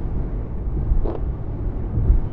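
Steady low road and engine rumble of a car driving at speed, heard from inside the cabin.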